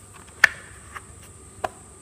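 Light clicks and knocks from a plastic RC jet-boat hull being handled and turned in the hand. A sharp click comes about half a second in, with fainter ones near one second and again later, over a steady faint high-pitched whine.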